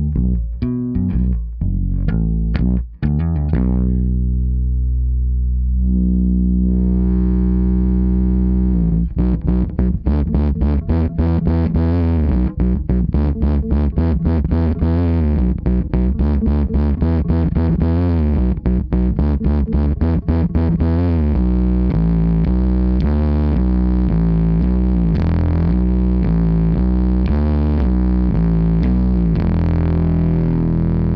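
Fender Precision Bass Special electric bass played through a Fender Princeton Reverb guitar amp and an extra 1x12 cabinet, reverb off, with a slightly distorted edge. A few plucked notes and a held note give way, about nine seconds in, to a fast run of repeated picked notes lasting some twelve seconds, then a looser moving bass line.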